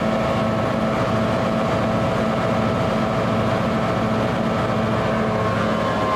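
EMD diesel-electric locomotive engine idling, a steady low run with a regular throb.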